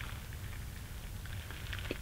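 Quiet outdoor background: a steady low rumble and faint hiss, with no shot or other distinct event.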